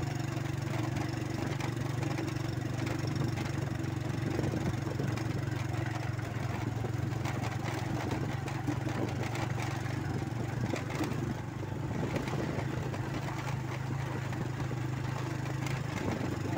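Motorcycle engine running steadily at a low pitch while riding a bumpy dirt track, with frequent rattles and knocks from the rough ground. The engine eases off briefly about eleven seconds in.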